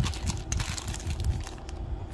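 A small clear plastic jewelry bag rustling and crinkling in the hands, with a few light clicks of steel rings being handled.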